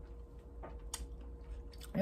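Fresh blueberries being chewed with the mouth close to the microphone, with a few sharp wet mouth clicks, the clearest about a second in.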